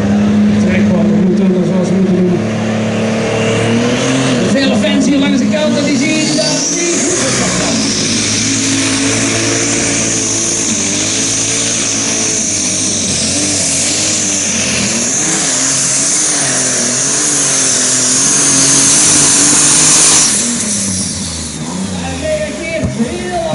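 Superstock pulling tractor's turbocharged diesel engine at full throttle, dragging the weight sled down the track. The engine note climbs over the first few seconds, then holds with a steady high whine above a wavering engine note, until the engine comes off the throttle about twenty seconds in.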